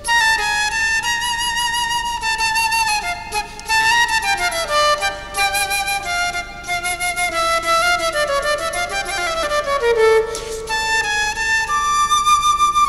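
Solo concert flute playing a fast Turkish melody of quick, running notes, with descending runs a few seconds in and again near the tenth second.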